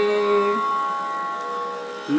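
Electronic keyboard holding a sustained note with a steady, unwavering tone. The lower notes stop about a quarter of the way in, leaving a higher note that slowly fades.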